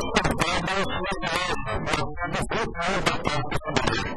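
A person speaking Portuguese without a break, one stretch of continuous talk.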